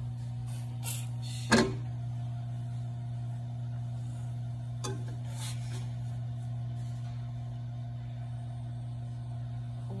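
Spatula knocking against a frying pan: one sharp clack about a second and a half in and a lighter knock near five seconds, over a steady low hum.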